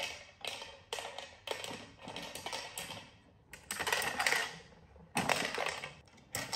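Dry kibble rattling and clattering inside a plastic treat-dispensing puzzle toy as a dog noses and paws its spinning top, in a quick run of bursts with longer, louder rattles about four and five seconds in.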